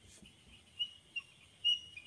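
Whiteboard marker squeaking against the board while writing: a few short, thin, high squeaks in the second half.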